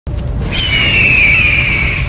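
Logo-intro sound effect: a low rumbling fiery whoosh, with a long, high, slowly falling screech laid over it from about half a second in. The screech is an eagle-cry effect.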